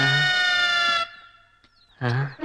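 A vegetable vendor's long, drawn-out hawking cry: a man's voice held on one low note that stops about a second in.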